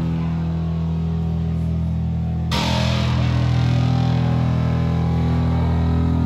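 Live heavy metal band with distorted electric guitars and bass holding a sustained low chord, the whole band crashing back in about halfway through with a sudden rise in hissy, full-range sound.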